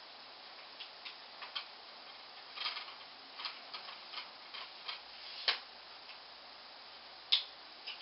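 Tripod legs being extended by hand: an irregular scatter of light clicks and knocks from the telescoping leg sections and their clamps, with two sharper clicks in the second half.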